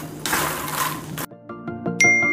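Makhana (fox nuts) being stirred with a wooden spatula in a kadai, a dry rustling scrape. It cuts off about a second in, and an instrumental background tune of quick plucked notes takes over.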